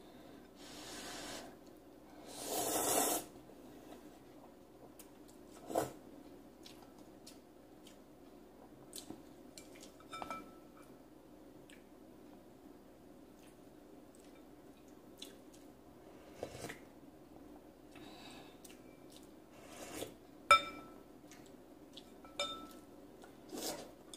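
Chopsticks and a soup spoon clinking and scraping against a glass bowl of noodle soup in scattered single clicks, the loudest about twenty seconds in. There is a noisy slurp of noodles about three seconds in.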